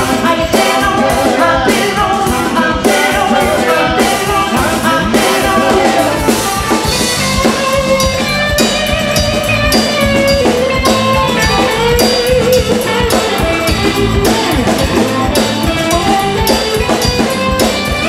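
A live band playing: a woman singing into a microphone over electric guitar, electric bass and a drum kit keeping a steady beat.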